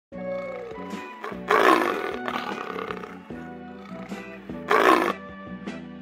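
Intro music with a tiger's roar laid over it as a sound effect. The roar sounds loud and long about a second and a half in, then again shorter just before five seconds.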